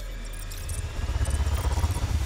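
Electronic sound design of a TV channel's closing ident: a deep rumble that grows louder about halfway through, under a thin whine slowly rising in pitch and scattered high electronic chirps.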